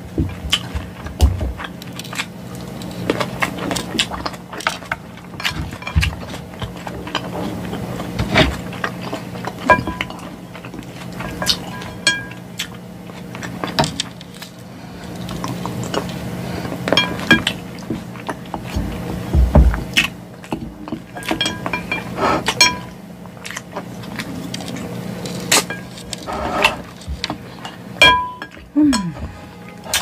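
Metal fork clinking and scraping against a glass salad bowl at irregular moments, with close-miked chewing of salad in between. A steady low hum runs underneath.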